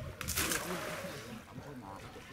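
A short splash of water, about a quarter second in.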